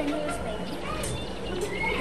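Faint background voices of children, short high-pitched calls and chatter, over the low hum of a large room.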